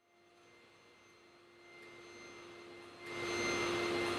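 Backpack vacuum cleaner running steadily: a hum with a held whine, fading in from silence and growing clearly louder about three seconds in.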